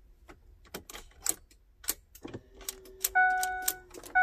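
Ignition key clicking as it is turned through its positions in a 2004–2008 Ford F-150, the key ring jangling. A low steady hum comes on a little after two seconds in, and about three seconds in the truck's warning chime sounds once.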